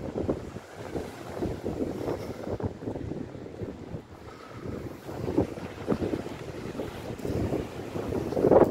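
Wind buffeting the microphone in uneven gusts, over the wash of small waves breaking on a sandy beach.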